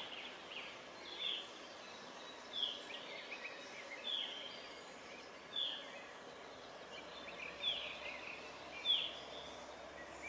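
A bird calling repeatedly outdoors: short, high calls that sweep downward, spaced one to two seconds apart, over faint twittering and quiet background noise.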